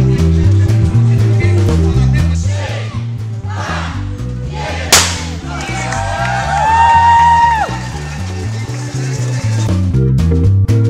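A single sharp bang of a starting gun about five seconds in, signalling the start of a road race, over loud background music with a steady beat. Just after, several overlapping whistle-like tones rise and fall.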